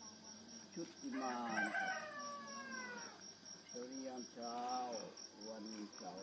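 A rooster crowing once, a long call that falls in pitch, followed by a few shorter, lower calls, over a steady high pulsing insect trill.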